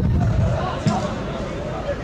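Football players shouting and calling on the pitch, with one sharp thud of a football being kicked a little under a second in.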